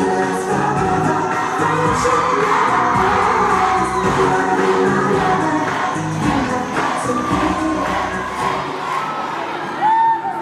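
Music with singing played over loudspeakers for a dance routine, with a large crowd cheering and shouting over it. The music's bass drops away near the end.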